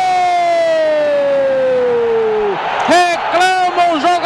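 Football commentator's long, drawn-out "gol" cry on a single held note, sliding slowly down in pitch and breaking off about two and a half seconds in, followed by normal commentary.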